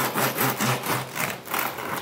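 A bread knife sawing back and forth through the crisp crust of a freshly baked artisan loaf, crackling and rasping several strokes a second.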